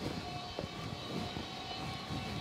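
Warehouse machinery running: a steady mechanical hum and whir, with a faint held tone in the first half-second.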